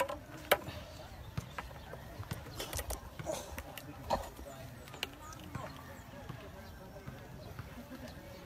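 Faint, indistinct voices with scattered sharp clicks and knocks, the loudest about half a second in.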